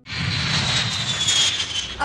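Four-engine jet airliner's engines heard as a steady rush with a high whine that slowly falls in pitch as it passes low.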